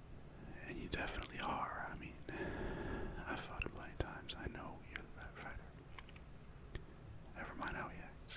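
A man whispering close into the microphone, in breathy phrases with short pauses and a few small clicks between them.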